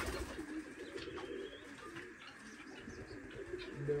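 Domestic pigeons cooing, several low coos coming and going, with a few faint knocks.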